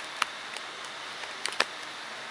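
Four light, sharp plastic clicks from a Sony Ericsson Xperia X10 smartphone being handled as it is held in flash mode on its USB cable: a pair at the start and a pair just past the middle, over a steady faint room hiss.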